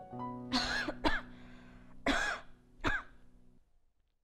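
A woman coughing four times, the first two close together, over soft background music that stops shortly before the end.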